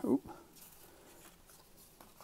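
Faint rub and slide of a cardboard trading card being lifted off the front of a stack of cards, just after a spoken word ends.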